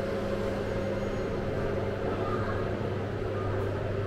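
Steady low hum of building machinery, holding a constant drone with a faint hiss under it.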